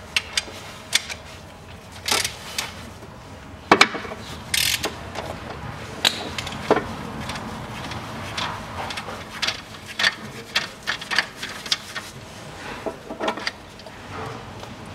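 Hand ratchet wrench with a Torx T50 bit clicking in irregular bursts as the timing-belt tensioner bolt is undone, with metallic knocks of the tool, the sharpest a little under four seconds in.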